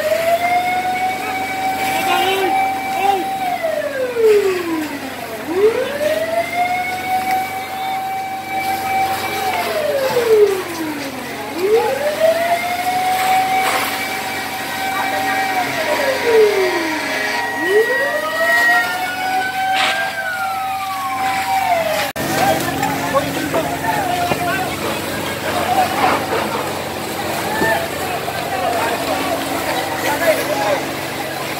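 A fire engine's wailing siren, going round four times: each cycle rises, holds a high note for a few seconds, then falls away. It cuts off suddenly about two-thirds of the way through, giving way to a noisy commotion of voices at the fire scene.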